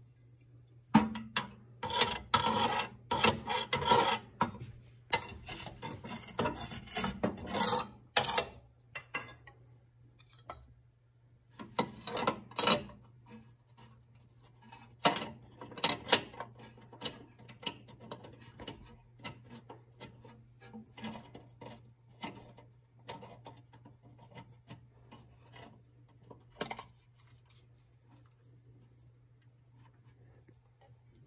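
Scraping and rubbing in a Harman pellet stove's sheet-metal ash compartment as ash and soot are cleared out. It starts with several seconds of dense, continuous rasping scrapes, then comes in short scrapes and knocks spread over the rest of the time.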